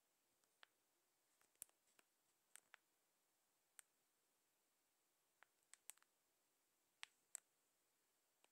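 Near silence, with about fifteen faint, short clicks at irregular intervals.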